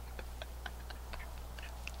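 A run of faint, irregular small clicks, about five a second, over a low steady hum.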